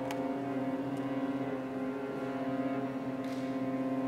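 String quartet holding a long, steady bowed chord, the cello sustaining a low note beneath.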